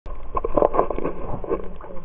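Muffled water noise picked up by a camera filmed underwater: irregular sloshing and bubbling crackles, loudest in the first second and a half, with a low steady hum coming in near the end.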